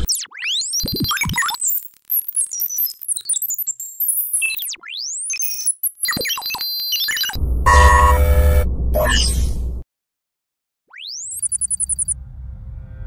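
Synthesized sci-fi interface sound effects: rapid electronic chirps and beeps with sweeping pitch glides, then a loud burst with a deep low end about seven seconds in. After a second of silence, a rising sweep leads into a quick run of beeps near the end.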